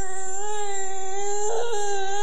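A single long, steady held note at one pitch, with a brief waver about one and a half seconds in.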